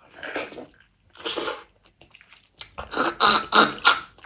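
Close-up wet eating sounds: a handful of curry-soaked rice and fish being sucked off the fingers and chewed. There are two short bursts, then a quick run of louder smacks and slurps in the last second and a half.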